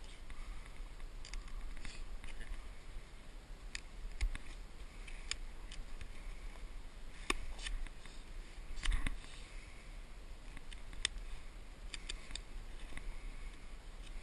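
A knife working a notch into a wooden fire board: scattered sharp clicks and taps, a few louder ones about seven, nine and eleven seconds in, over a steady low rumble.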